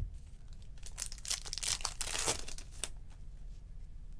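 Trading-card pack wrapper being torn and crinkled open by hand: about two seconds of ripping and rustling, starting about a second in.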